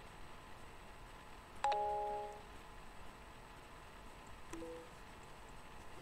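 An electronic chime rings once about a second and a half in, several notes together, fading over about half a second. A softer, short two-note tone, rising in pitch, follows about four and a half seconds in.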